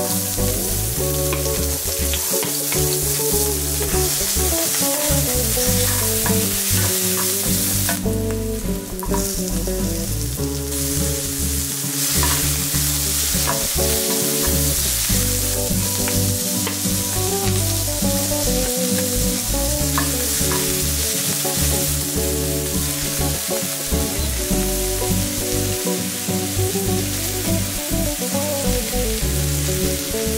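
Chopped onion, celery and other vegetables sizzling in hot oil in a nonstick frying pan, stirred and scraped with a wooden spatula. The sizzle drops away for a couple of seconds about eight seconds in, with background music underneath.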